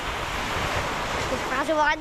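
Surf washing up on a sandy beach, a rush of water that swells and fades over about a second and a half.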